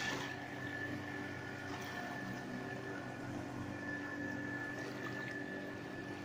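Outboard motor of a long wooden river canoe running steadily at a distance, an even drone with a thin high tone above it, over the soft wash of the river.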